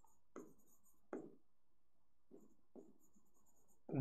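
Faint pen strokes on a writing board: a few short, soft scratches as words are handwritten.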